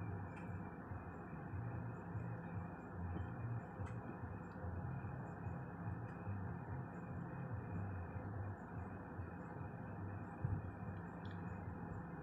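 Electric fan running: a steady hiss with an uneven low rumble and a faint steady high whine, broken by a few faint clicks.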